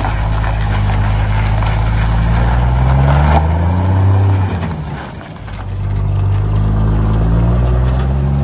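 Diesel truck engine accelerating away, its note rising steadily, dropping briefly about five seconds in, then climbing again.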